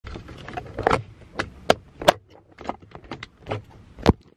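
Handling noise from a handheld camera being fumbled with close to its microphone: a run of irregular clicks and knocks.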